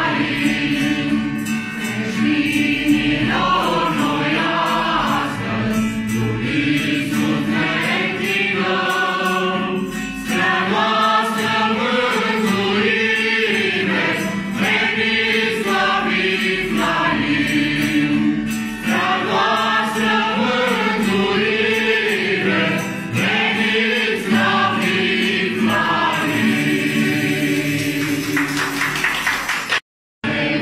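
A mixed group of men and women singing a Romanian Christmas carol (colind) together, accompanied by a strummed acoustic guitar. The sound breaks off for a moment at the very end.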